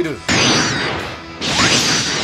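Movie-trailer sound effects: two sudden, loud noisy hits about a second and a quarter apart, each with a falling whoosh that fades away.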